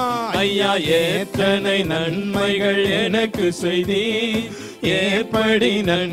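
Men singing a Tamil Christian worship song into microphones over instrumental backing music.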